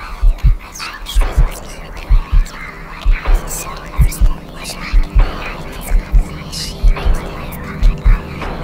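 A heartbeat sound effect beating in double thumps, lub-dub, a little faster than once a second, over a steady low hum.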